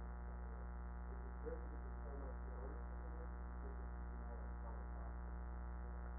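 Steady electrical mains hum on the recording, a low buzz with many overtones. Under it, a faint, distant voice of an audience member asks a question away from the microphone.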